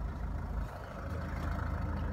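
Land Rover Freelander SD4's 2.2-litre four-cylinder diesel idling steadily, heard from inside the cabin.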